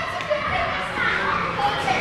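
Children's voices at play, calling out and chattering while riding an inflatable teeter-totter, in a large gym hall.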